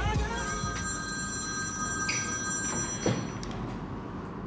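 Corded desk telephone ringing: one long, steady electronic ring that stops about three seconds in, with a click as the handset is lifted.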